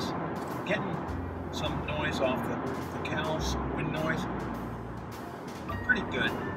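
Tyre and road noise inside the cabin of a 2017 Honda Civic Hatchback cruising at about 68 mph on the interstate: a steady low drone under a haze of noise. The car is a bit loud over the bridges.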